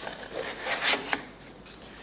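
A thin maple strip rubbing and scraping against a wooden blank as it is handled, a few short scrapes in the first second, then quiet.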